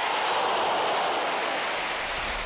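Large football stadium crowd cheering as a shot on goal is cleared: a steady wash of crowd noise.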